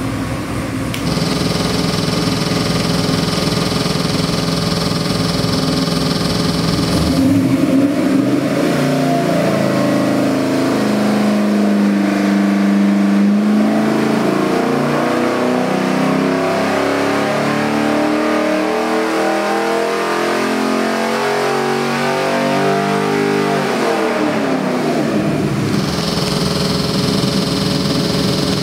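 LS3 376 cubic-inch V8 with Borla stack fuel injection on an engine dyno. It idles, then about seven seconds in makes a full-throttle sweep pull, its pitch climbing steadily under the dyno's load for about sixteen seconds. The throttle then closes and the revs fall back to idle.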